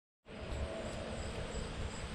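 Steady outdoor background rumble, with faint high chirps repeating about three times a second above it. It starts just after the opening moment of silence.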